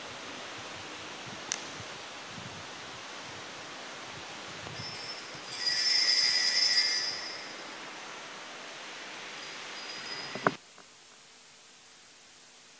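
Steady faint church room hiss. About five and a half seconds in there is a brief, high, ringing chime of about a second and a half, like small metal bells. A couple of knocks come near the end, then the background drops to a quieter hiss.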